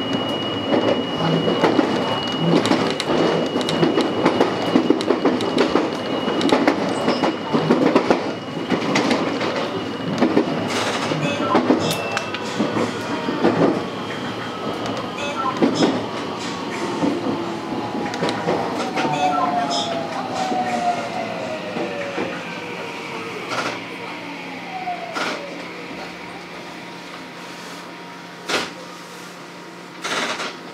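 JR West 223 series electric train heard from the cab: wheels running and rattling over the track, then the traction motors whining down in pitch as the train brakes for a station stop. The running noise dies away toward the end, with a few sharp clicks.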